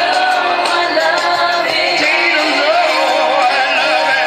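A male singer's live vocal through a microphone and PA over a pop backing track, with a wavering vibrato on held notes.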